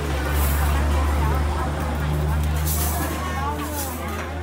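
A steady low engine rumble that sets in right at the start, with people talking in the background.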